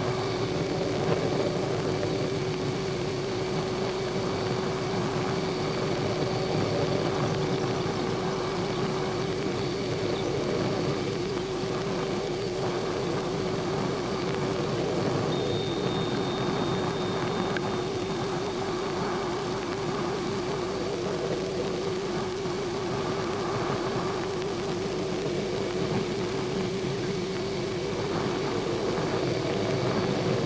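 Steady engine-like roar with a wavering hum running through it, on a worn old film soundtrack. It stands in for the missile's rocket boosters in flight.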